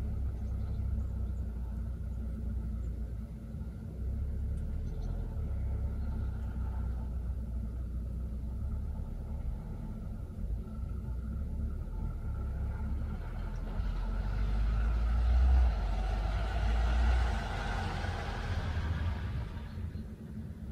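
Steady low outdoor rumble with a car going past. Its noise swells about two-thirds of the way in and fades again near the end.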